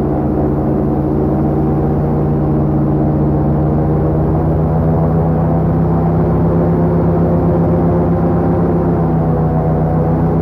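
Airboat's engine and propeller running steadily under way, a loud, even drone that holds one pitch.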